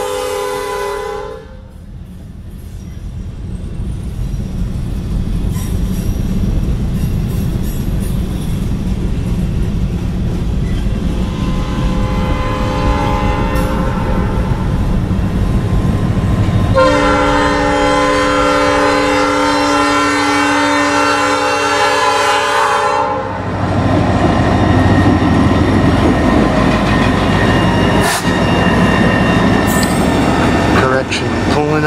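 Norfolk Southern EMD SD40-2 diesel locomotive sounding its air horn for grade crossings: a blast that cuts off about a second and a half in, a faint distant sounding around twelve seconds, then a long loud blast from about seventeen to twenty-three seconds. Under it runs the rumble of the locomotive's engine and wheels on the rails, loudest near the end as it passes close.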